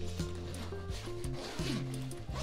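Zipper on a Jujube backpack diaper bag's main compartment being pulled open, a scratchy zipping sound, over background music with steady low notes.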